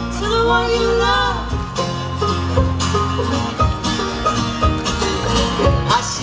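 Live bluegrass band playing: banjo, acoustic guitar and double bass. A wavering sung note is held for about the first second and a half, then picked string notes over the bass carry on.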